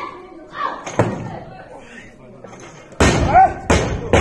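Loaded Olympic barbell with bumper plates dropped onto the lifting platform about three seconds in: one loud slam followed by a few quick bounces of the bar.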